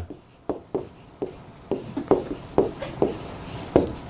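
A pen writing on the glass face of an electronic display board: about a dozen quick, irregular taps and short scratches as words are handwritten.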